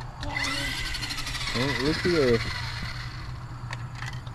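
Toy remote-control monster truck's electric motor whining, spinning up quickly and then winding down over about three seconds.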